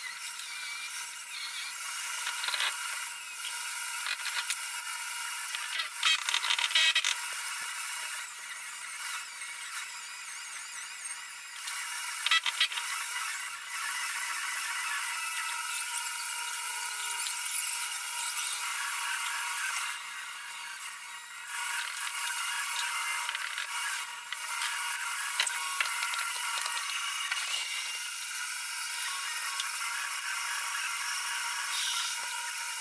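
Angle grinder grinding steel on a truck's rear axle, a continuous high-pitched scraping whine with a few louder bursts and a brief letup about two-thirds of the way through.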